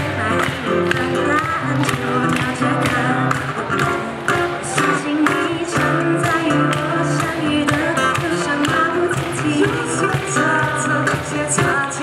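Live acoustic pop band: voices singing in harmony over acoustic guitar, with a cajon keeping a steady beat of about three strokes a second.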